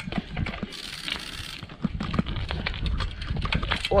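Trial mountain bike being ridden and manoeuvred on asphalt, its front tyre badly underinflated: irregular clicks, knocks and rattles from the bike, with a hiss for about a second from about 0.7 s in.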